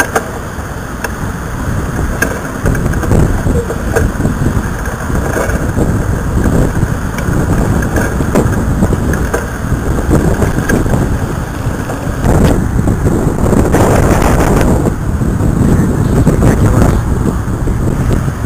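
Strong gusty storm wind buffeting the microphone: a loud, uneven rush, heaviest low down, with a stronger gust about twelve seconds in.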